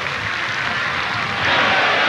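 Football stadium crowd noise, a dense din of many voices that grows louder about one and a half seconds in: the crowd worked up into an uproar.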